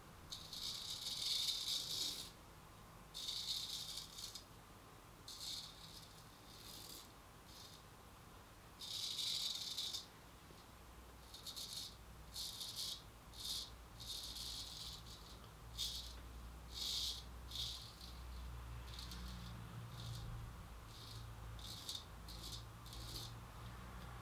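Hollow-ground straight razor scraping through two days' stubble on lathered skin, each stroke a crisp rasp. The strokes come in a long series: a few run about two seconds, and they turn shorter and quicker in the second half.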